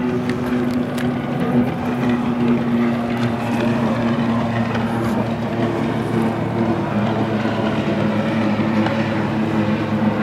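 An engine running steadily, a low hum that holds one pitch throughout.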